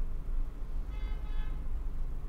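Steady low hum of room and recording noise, with a faint, short, high-pitched squeak about a second in.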